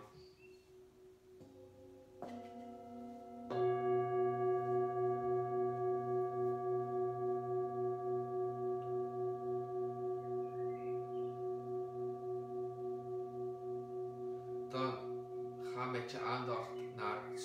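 Several brass singing bowls of different pitches struck one after another, three strikes in the first few seconds with the last one loudest. They then ring on together in a long, slowly fading tone with a steady wavering pulse.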